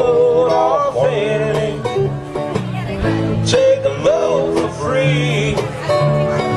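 Live band playing a country-rock song: strummed acoustic guitars and a wavering lead melody over a steady drum beat, with a drum hit about once a second.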